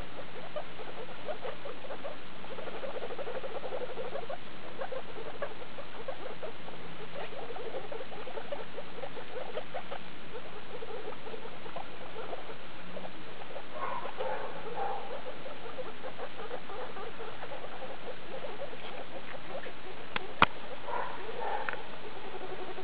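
Skinny pigs (hairless guinea pigs), a mother and her young pups, giving soft, rapid pulsing calls. Higher calls come a little past halfway and again near the end, and there is one sharp click about twenty seconds in.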